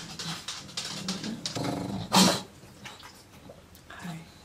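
A low, growl-like vocal sound starting about one and a half seconds in and ending in a single sharp, loud bark-like cry, followed by quiet.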